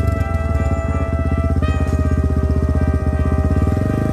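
Background music of held chords that change about one and a half seconds in, over the steady idle of a Honda Ape 100's single-cylinder four-stroke engine.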